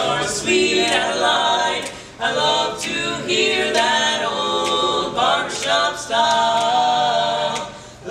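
Male barbershop quartet singing a cappella in close four-part harmony, with short breaks between phrases and a long held chord near the end.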